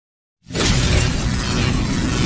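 Intro-animation sound effect: after about half a second of silence, a loud, dense noise cuts in suddenly and holds steady.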